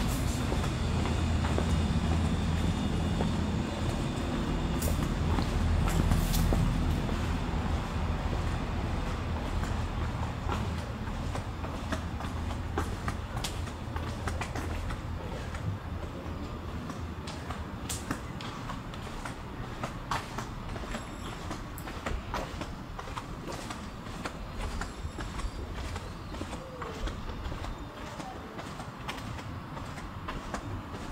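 A train running with a low rumble and steady low hum, loudest in the first several seconds and then easing off, with a few sharp clicks later on.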